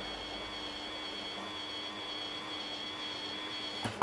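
Geared 15 RPM DC motor of a rotary welding positioner running at its maximum speed setting and turning the chuck: a steady high whine over a lower hum, stopping just before the end.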